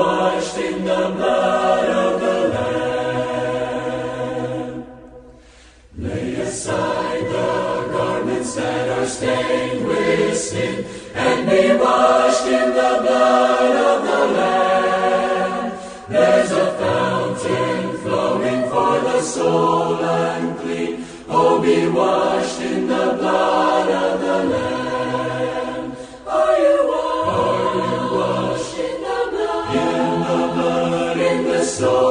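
Choir singing a gospel hymn in several-part harmony, with a brief lull about five seconds in before the voices come back.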